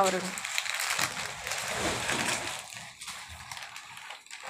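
Rustling and crinkling from a mattress and its packaging being handled up close: a dense crackly noise for about three seconds that fades near the end.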